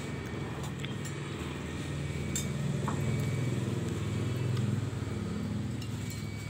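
A passing road vehicle's engine hum that swells over a few seconds and then fades, with a few faint clicks.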